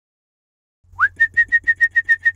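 A bird-like whistled call about a second in: one note sliding up in pitch, then a rapid run of short notes on one pitch, about seven a second.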